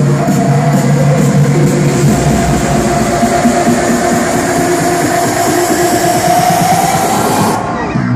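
Trance music from a DJ set playing loud over a club sound system, with a held synth line that rises slightly in pitch; near the end the treble drops away as the track is filtered down.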